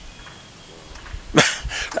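A short pause with low background hiss, then a man's voice starts abruptly about one and a half seconds in and carries on talking.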